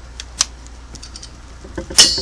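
Small metallic clicks and ticks of vise-grip pliers working a broken screw out of a cast sewing-machine body, with a sharp click about half a second in. It ends with a loud metal clink that rings on.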